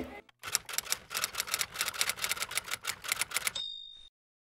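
Typewriter keys clacking in a rapid run of keystrokes, ending near the end with the short ding of the carriage-return bell.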